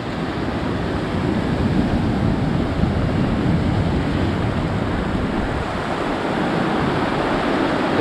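Heavy surf breaking and washing up over a pebble beach, a steady rush of waves.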